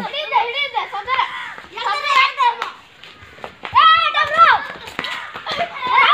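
Children's voices shouting and calling out during an outdoor game, in three bursts with a short lull in the middle.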